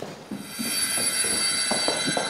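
Background music from a drama score: a cluster of sustained high tones swells in about half a second in, over a lower pulsing layer.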